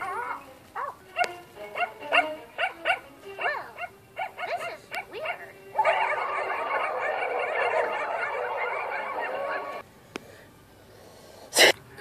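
Cartoon dogs barking on a TV soundtrack, heard through the speaker: a run of separate yaps, then about four seconds of many barks piling over one another. It stops suddenly, and a sharp loud click comes near the end.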